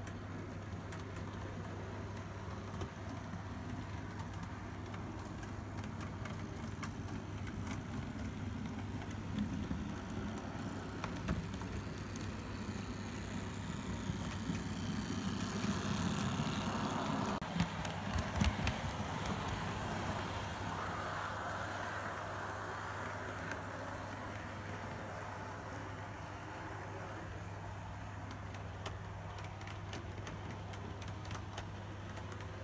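Model railway Class 66 diesel locomotive running past on the layout track: a motor whirr and wheel rumble that swells to its loudest a little past midway, with a few sharp clicks as it passes, over a steady low hum.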